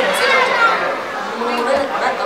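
Speech only: people talking back and forth.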